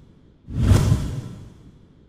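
A deep whoosh sound effect for an animated logo: one swell that comes in sharply about half a second in and fades away over the next second and a half.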